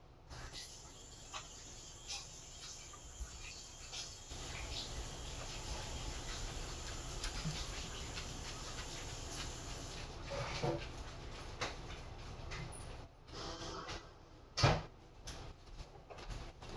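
Handling and rummaging noise: a steady rustling hiss with scattered clicks, then several knocks, the loudest near the end.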